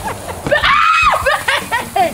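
A young woman's high-pitched squeal, rising and then falling for about half a second, followed by bursts of laughter, as she wets herself with a garden hose.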